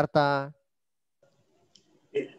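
A man's voice says one short word, then near silence with a faint click near the end.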